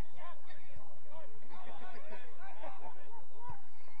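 Footballers and onlookers shouting and calling out across the pitch during play, several distant voices overlapping, with two dull thumps, one about a second in and one near the end.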